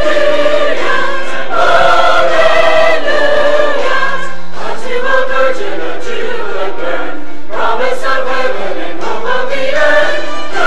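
Mixed choir of men's and women's voices singing held chords, with short breaks between phrases.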